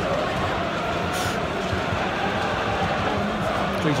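Football crowd in the stands: a steady din of many voices, with part of the crowd singing a chant.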